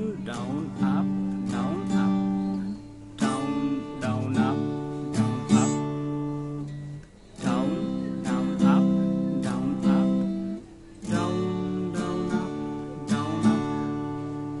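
An acoustic guitar is strummed in a six-count strumming pattern, a run of down and up strokes over each chord. The chord changes about every four seconds, with a brief gap before each change, for four chords in all.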